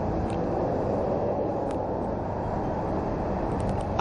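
Small motorcycle riding in city traffic, heard from the rider's seat: a steady low rumble of engine and road noise that holds even throughout.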